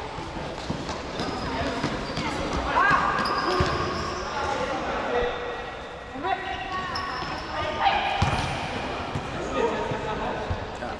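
Futsal being played in an echoing sports hall: players calling out across the court, with thuds of the ball being kicked and bouncing on the floor.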